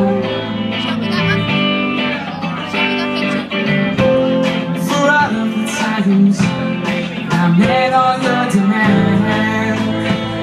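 A live rock band playing, with electric guitars to the fore over bass, drums and keyboard; the drum hits come through as a steady beat.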